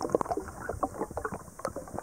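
Underwater bubbling and small irregular clicks and knocks, as heard by a camera submerged in a spring cave.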